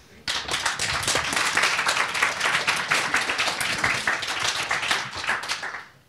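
Audience applauding, starting about a quarter second in and dying away just before the end.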